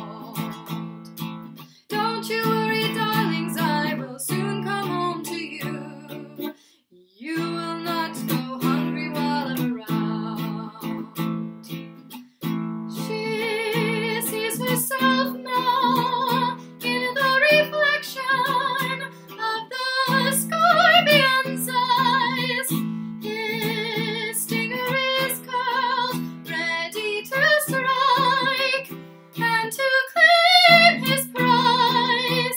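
Baritone ukulele strummed in a steady rhythm, with a woman singing along with vibrato; the playing breaks off briefly a few seconds in before resuming.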